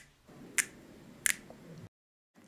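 A couple of faint, sharp clicks with a low hiss between them.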